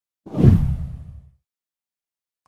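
A deep whoosh sound effect that swells in about a quarter second in and fades away over about a second.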